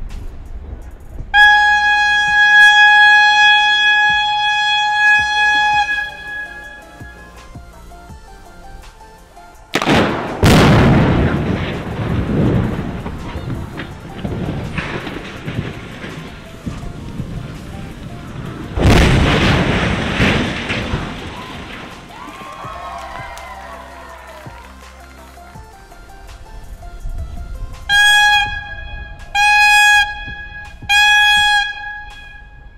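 Demolition warning horn sounding one long steady tone, then the detonation of the charges in the legs of a concrete stair tower, heard as one sudden blast that dies away over several seconds as the tower comes down; a second blast-and-collapse sound follows about nine seconds later. Near the end two short horn blasts begin the three-blast all-clear signal.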